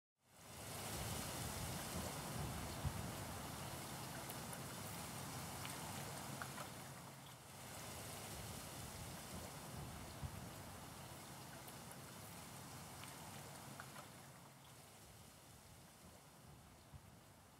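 Faint, steady outdoor water ambience: a soft hiss of moving water with a few small ticks. It dips briefly about seven seconds in and fades slowly toward the end.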